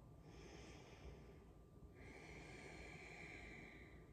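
Faint, slow breathing by a woman holding a yoga pose: two long, hissing breaths, the second starting about halfway through, over near-silent room tone.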